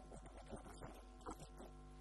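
Steady electrical mains hum on the audio feed: a low, faint buzz made of several evenly spaced steady tones.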